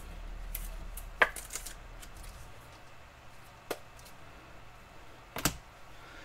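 A few sharp light clicks and taps, spaced a second or two apart, as thick trading cards are handled and set down on a table.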